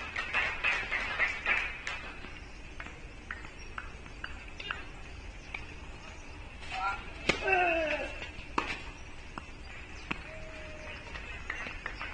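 Sharp knocks of a tennis ball on a court, with a run of evenly spaced knocks about two a second, followed by a short voice call with a falling pitch a little past halfway.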